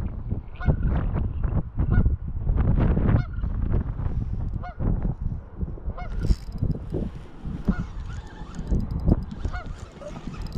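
Geese honking repeatedly in short calls, over low wind rumble on the microphone.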